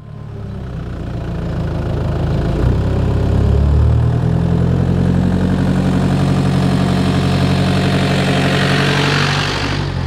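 M1161 Growler utility vehicle's engine running as the vehicle drives up and passes directly over the camera. The sound swells over the first few seconds, holds steady, gets brighter as the vehicle closes in, and begins to drop away near the end as it passes.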